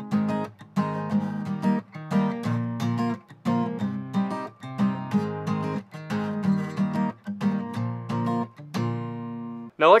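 Acoustic guitar with a capo on the third fret, strummed in a down, down, up, up, down pattern through an A minor, F, C, G chord progression. The chords ring between strokes, and the last chord is held and then damped just before the end.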